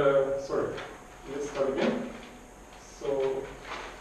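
A man's voice speaking in three short phrases with pauses between, echoing in a lecture room.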